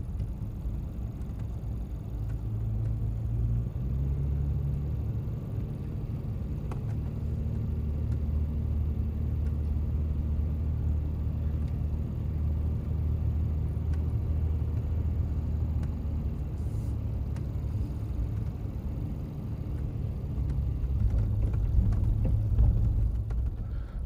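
A car's engine and tyres heard from inside the cabin while driving up a paved driveway: a steady low rumble that steps up in pitch about four seconds in and grows louder near the end.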